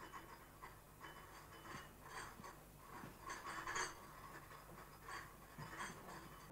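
Faint, scattered clinking of china cups and dishes on a tea tray, in short clusters, loudest a little past the middle.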